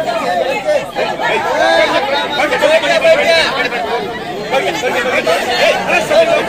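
A crowd chattering, many voices talking over one another at once.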